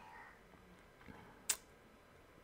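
A pause of quiet room tone broken by a single short, sharp click about one and a half seconds in.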